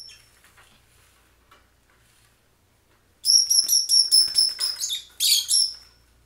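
Lovebirds calling: one short shrill chirp at the start, then about three seconds in a loud, rapid run of high-pitched chirps lasting over two seconds that ends in a longer call.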